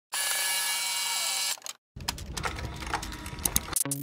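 Old video camcorder sound effects: a steady mechanical whir for about a second and a half, a short dropout, then crackling static with many clicks.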